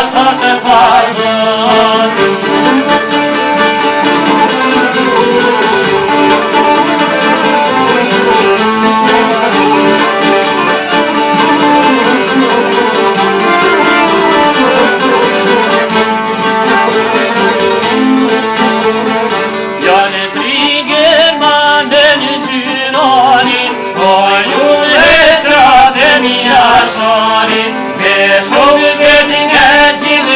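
Albanian folk music: a sharki and a çifteli strummed together in a lively passage, with men singing over them from about twenty seconds in.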